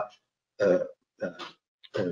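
A man's voice hesitating mid-sentence: a short filler sound about half a second in and a brief second vocal fragment a little later, with silent pauses between.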